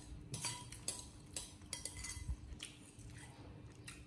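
Metal spoon scraping and clinking against a ceramic bowl as food is scooped, about ten short irregular strokes.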